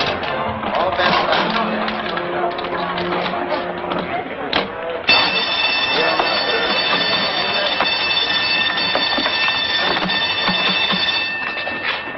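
Coin slot machine clattering as its reels spin, then a steady high ringing tone held for about six seconds that cuts off shortly before the end: the machine jammed by a bracelet charm fed in instead of a coin, taken for a short circuit.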